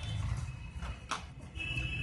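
Hands handling a cardboard camera box and its packed accessories: a few light knocks and clicks of cardboard and plastic, the clearest about a second in, over a steady low hum.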